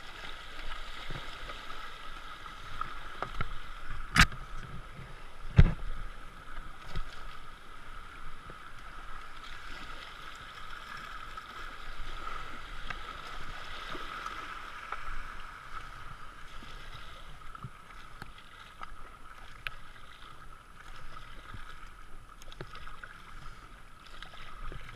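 Kayak paddled down a shallow rapid: a steady rush of white water with small paddle splashes and ticks. Two sharp knocks stand out, about four and five and a half seconds in.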